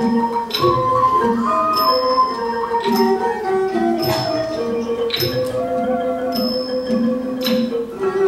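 Thai classical ensemble music led by ranat xylophones playing running melodic lines, with struck accents recurring about once a second.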